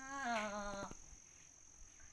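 A woman's unaccompanied voice singing Hmong kwv txhiaj, a sad orphan's lament. A long held note slides down in pitch, wavering, and breaks off about a second in.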